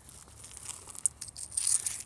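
Small, light clicks and scratchy rustling as freshly knapped obsidian blades are handled and picked off denim, thickest near the end.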